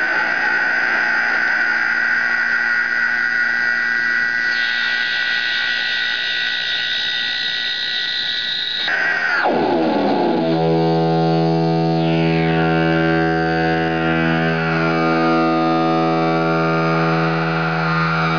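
Sustained electronic drone from a ring-modulated electric guitar rig, with amp, ring modulator and mixer fed back into themselves. A high steady tone, joined by a higher layer about four seconds in, glides down about nine seconds in and gives way to a lower drone with many overtones.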